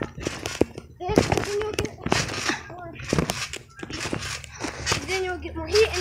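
Children talking, the words unclear, with a few short knocks between the phrases.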